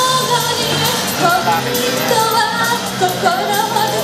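A young woman singing a pop song into a microphone, her voice amplified through the stage PA over pop accompaniment with a steady beat.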